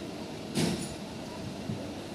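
Passenger train pulling slowly away from a platform, heard from the open door of a coach: a steady rumble and rattle, with one short sharp clank about half a second in.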